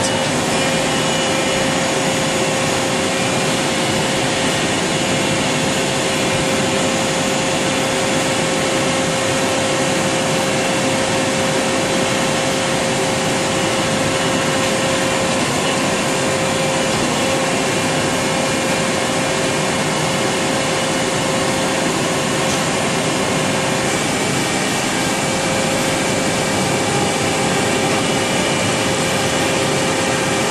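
DMG Gildemeister Twin 65 CNC lathe running: a steady whir with a constant mid-pitched tone and no pauses.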